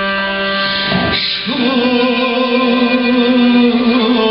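Armenian kamancha (bowed spike fiddle) and viola playing a slow folk melody. After a short break with a pitch glide about a second in, a long note is held.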